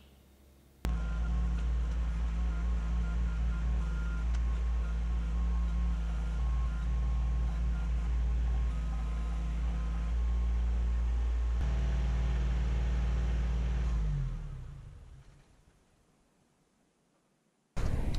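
Kubota compact tractor's diesel engine running steadily while working the backhoe, cutting in suddenly about a second in and fading out a few seconds before the end.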